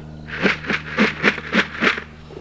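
Grain rattling in a plastic feed bucket as it is shaken or carried, six short strokes at about three a second.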